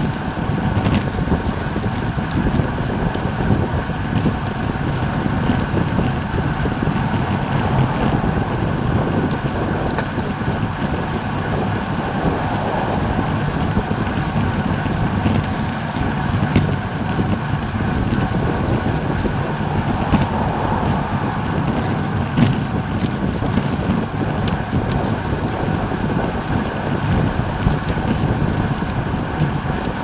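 Steady wind rushing over a bike-mounted action camera's microphone at about 26 mph on a road bike, mixed with tyre and road noise.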